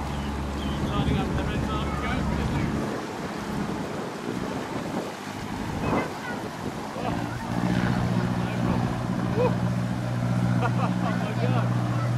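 Hire motor cruisers' inboard engines running slowly, a steady low hum. One fades about three seconds in, and a second cruiser's engine comes in about seven seconds in as it passes.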